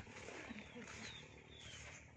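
Faint, thin calls of sunbirds from a foraging flock in the trees: a few short, high chirps that fall in pitch, around the middle.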